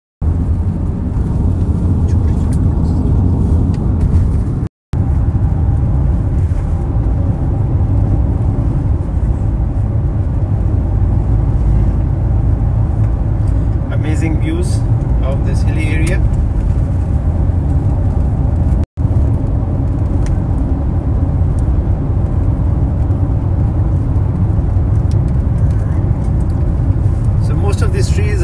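Steady low rumble of road and engine noise inside a moving car's cabin. The sound cuts out briefly three times: at the start, about five seconds in and about nineteen seconds in.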